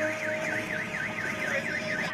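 A rapidly warbling electronic alarm tone, sweeping down and up about four times a second and cutting off at the end, over steady held music notes.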